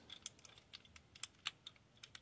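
Faint, scattered small clicks of a transforming robot toy's joints as its head is turned by hand.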